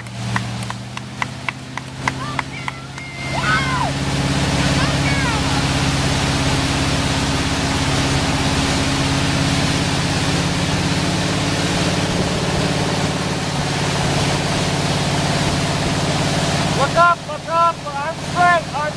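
Towboat engine running under way, its pitch stepping up about three seconds in as it speeds up, with a loud steady rush of wind and water from the wake and spray.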